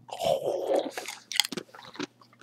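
American pit bull terrier crunching a corn chip. A rustling, noisy start is followed by a quick run of sharp, crisp crunches in the second half.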